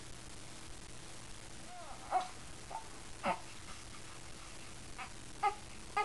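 An infant makes a few short, soft vocal sounds: little coos and squeaks, spaced a second or so apart from about two seconds in.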